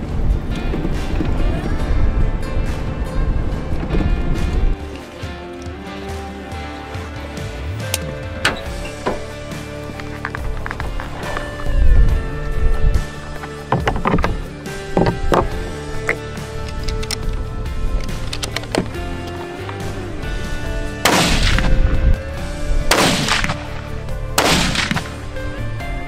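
Background music throughout, and near the end a scoped hunting rifle fires three shots within about four seconds, each ringing out, as the rifle is sighted in at the range.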